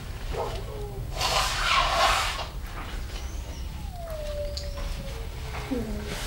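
Clothing rustling as a t-shirt and shoulder harness are handled and pulled about on a child, followed by a long, slowly falling hum in a child's voice.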